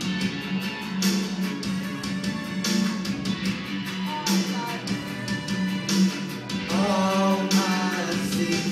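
Instrumental backing track of a pop song playing during a break in the lead vocal: strummed guitar over a steady beat with a crash roughly every second. A short vocal line comes in near the end.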